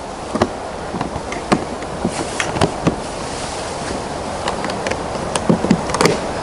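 Metal twist latches on an aluminium-trimmed hard carrying case being flipped and turned, giving a handful of sharp clicks, most in the first three seconds and a couple more near the end, over a steady background hiss.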